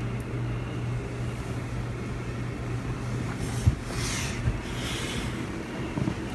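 Steady low hum of room noise in a darkened nursery. About halfway in there are two soft bumps and a brief rustle.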